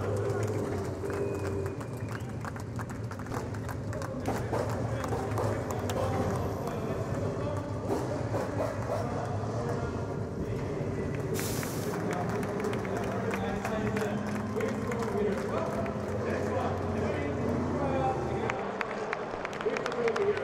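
Indistinct voices and crowd noise over a steady low hum that fades near the end, with a short burst of hiss about eleven seconds in.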